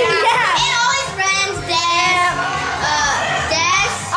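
Young girls singing loudly in high, wavering voices, playful and overlapping.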